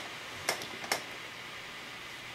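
Quiet room tone with a steady hiss and two short, faint clicks about half a second apart.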